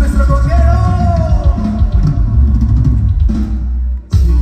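Live cumbia band playing loudly, with drum kit and percussion over a heavy bass line.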